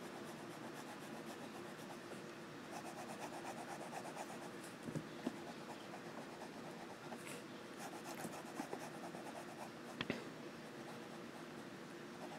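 Noodler's Tripletail fountain pen nib scratching faintly across lined notepaper as it draws and doodles, with two small ticks about five and ten seconds in.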